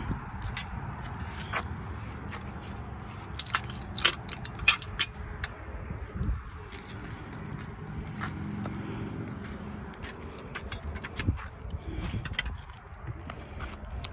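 Scattered sharp clicks and knocks from a chain-link gate and handling, a few loud ones about four to five seconds in, over a steady low outdoor rumble.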